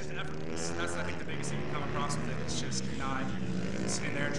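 A man talking, played back from a promotional video through lecture-hall loudspeakers, over a steady low drone.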